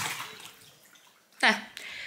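A woman's voice trailing off into a short pause, then a single spoken "yeah" about a second and a half in, over quiet room tone.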